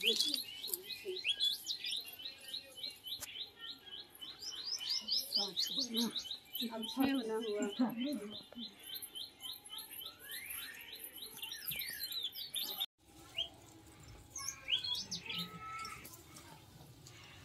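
A small bird chirping in a fast, even series of high chirps, about four a second, that cuts off suddenly some thirteen seconds in; faint voices murmur beneath it.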